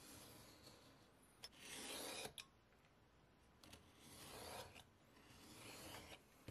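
A knife blade drawn through leather along the edge of a ruler, in three scraping cuts of about a second each.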